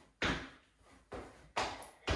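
Trainers landing on a hard tiled floor during squat jumps: three sharp thuds, each with a short echo off the bare room.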